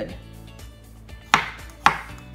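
Chef's knife chopping garlic cloves on a wooden cutting board: two sharp knocks of the blade on the board, about half a second apart, in the second half.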